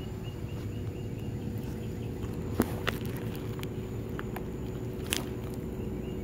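Steady low outdoor background noise with a faint hum, broken by a few sharp clicks, the loudest about two and a half and five seconds in.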